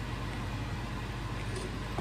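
Steady low hum with a faint hiss, the background noise of a small kitchen, with no distinct sound events.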